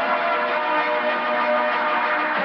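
Bells pealing on a film soundtrack: many overlapping ringing tones at different pitches, steady and loud, mixed with background music.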